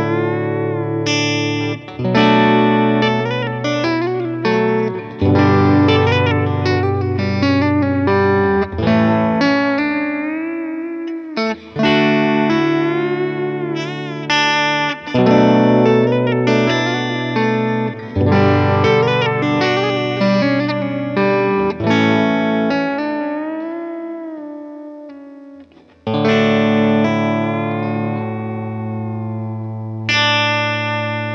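Harley Benton CST-24HB semi-hollow electric guitar being played. Chords are struck and left to ring every few seconds, with single-note lead phrases and string bends between them. Near the end one chord fades almost away before a fresh chord rings out.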